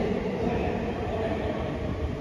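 A steady low rumbling noise with no distinct strikes or voices.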